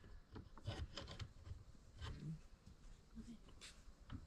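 Quiet handling sounds: faint, scattered clicks and rubs of seat-mount hardware being fitted onto a boat seat post.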